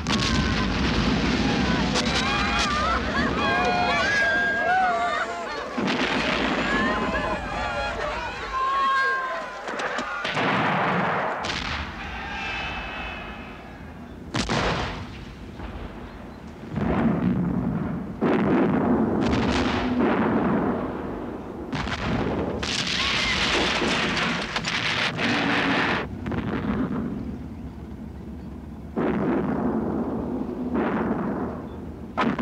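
Field guns firing again and again, with shells bursting: sudden heavy blasts that each die away, coming close together after the first ten seconds. Shouting voices waver over the gunfire in the first several seconds.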